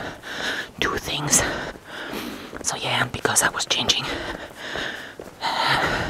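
A person speaking in a whisper, with sharp hissing s-sounds.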